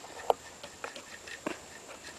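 A few light, scattered clicks and taps of metal parts being handled as the washer and nut are fitted by hand onto the driven clutch shaft of a GY6 150cc engine. The sharpest click comes about a third of a second in.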